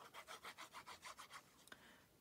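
Tip of a Tombow liquid glue bottle rubbing across cardstock in quick back-and-forth zigzag strokes, about six or seven a second, faint; the strokes stop shortly before the end with a small click.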